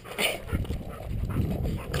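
A dog sniffing with its nose in dry grass and leaves, in short, quick sniffs, the sharpest one just after the start. A low rumble runs underneath from about half a second in.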